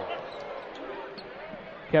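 Arena crowd murmur picked up under a radio broadcast, with a basketball being dribbled on the court as the ball is brought up the floor.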